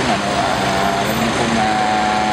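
Steady road traffic noise with a low held drone that runs for about a second, breaks off briefly, then resumes.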